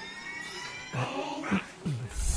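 A rising electronic sweep, several tones gliding upward together for about a second, as a sound effect in a film soundtrack.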